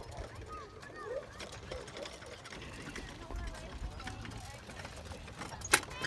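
Distant voices calling out over a low outdoor rumble, with a single sharp click near the end.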